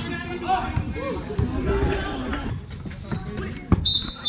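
Outdoor pick-up basketball: voices of players and onlookers, then a basketball bouncing on the concrete court, a few sharp knocks near the end.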